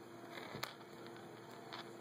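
Faint handling sounds of fingers pulling fishing line and a hook to tighten a knot, with a small sharp click about half a second in and a fainter one near the end, over a low steady hum.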